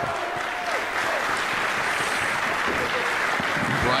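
Audience applauding steadily: dense, even clapping.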